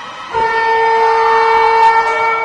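Ice rink horn sounding one long, steady blast that starts about a third of a second in.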